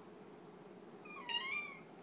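A cat giving one short, whiny meow about a second in.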